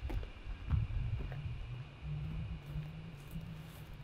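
Footsteps on dry dirt and gravel, with a low steady hum setting in about a second and a half in.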